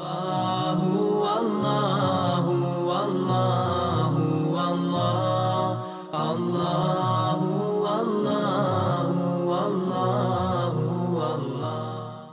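Chanted vocal music in the manner of a nasheed: low voices holding a slow melody with long notes. The phrase breaks off for a moment about halfway through, then resumes and begins to fade near the end.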